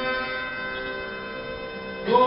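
Harmonium holding a steady sustained chord that slowly fades, with no singing or drumming over it.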